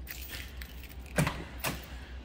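Electric door popper on a shaved-handle car door releasing the latch: two sharp clicks about half a second apart as the passenger door pops open.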